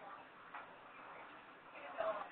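Faint telephone conference line: low hiss with distant, muffled voices in the background and a soft tick or two.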